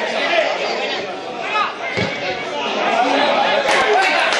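Many voices talking and calling out at once, the chatter of spectators and players at a small football ground. A single sharp knock sounds near the end.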